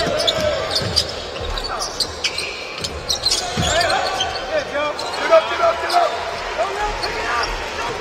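Live basketball game sound: a ball bouncing on a hardwood court, with sneakers squeaking and players calling out during a drive to the basket and an offensive rebound.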